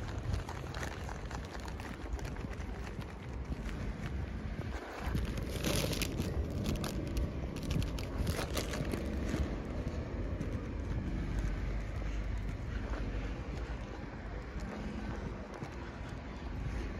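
Wind rumbling on the microphone while walking, with crackly crinkling of a paper bag in the middle.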